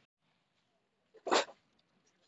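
One short, sharp burst of sound from the man, about a second and a half in.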